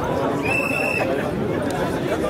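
Crowd of demonstrators chattering. About half a second in, a short, steady, high whistle blast lasts about half a second.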